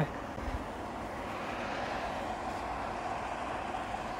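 Steady, even background noise of a large shop floor: a constant hiss and hum with no distinct events.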